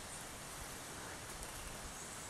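Quiet rainforest background: a faint, even hiss with no distinct sounds.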